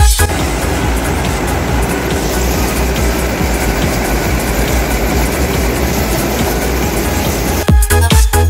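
An Ursus C360 tractor's diesel engine and a Sipma Z569/1 round baler running together: a steady, loud machine noise over a low drone. Electronic dance music with a beat cuts back in near the end.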